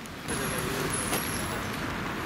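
Motor vehicle noise: a steady rush that swells suddenly about a third of a second in and then holds, with a faint high whine early on.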